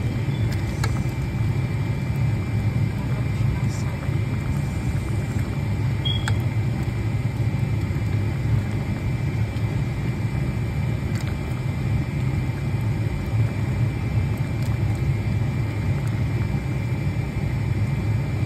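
A steady low rumble, with a few faint light clicks of a wooden spoon against the steel pot as stew is stirred.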